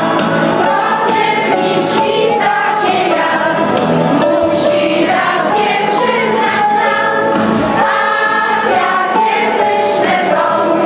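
An amateur group of mostly older women's voices, with some men's, singing a Polish Christmas carol (kolęda) together in chorus, steadily throughout.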